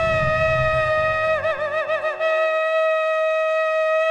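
A shofar blast: one long ram's-horn note that wavers quickly up and down for under a second about a second and a half in, then holds steady again.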